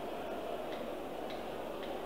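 Steady background hiss with faint, evenly spaced ticks, a little under two a second.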